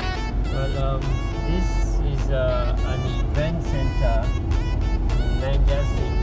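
Car driving, heard from inside the cabin: a steady low road and engine rumble, with music and a voice playing over it.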